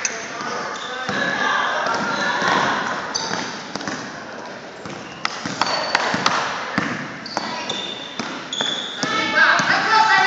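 Basketball being dribbled on a hardwood gym floor, the bounces echoing in a large hall, with short high sneaker squeaks and the voices of players and onlookers throughout.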